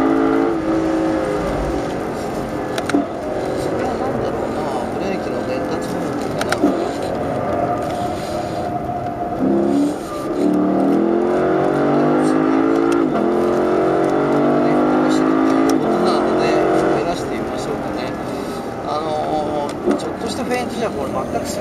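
In-cabin sound of a Lexus LC500's 5.0-litre V8 on track. It starts high as the car brakes and shifts down. From about ten seconds in the engine pulls hard with revs rising, and there are upshifts about 13 and 16 seconds in.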